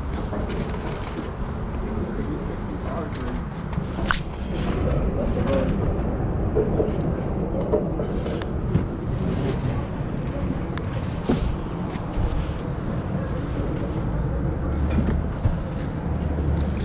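Clothes hangers clicking and scraping along a metal clothes rack as garments are pushed aside one by one, with the sharpest click about four seconds in, over a steady low rumble.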